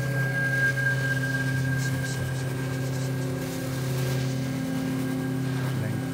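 Modular synthesizer drone: a steady low tone, joined about a second in by a second sustained tone above it, with a thin high whistling tone over the top.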